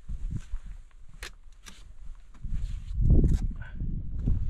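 A hiker breathing hard while stepping over granite boulders, with a few sharp clicks of a trekking pole's tip on the rock. A low rumble of wind on the microphone swells to its loudest about three seconds in.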